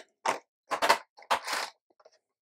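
A few short rustling, scraping noises of handling, three main ones about half a second apart.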